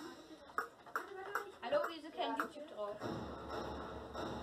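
Voices talking, with short pings and clicks as hands tap steel cooking pots wired to a Makey Makey board. About three seconds in, a steady sustained sound with a low hum takes over.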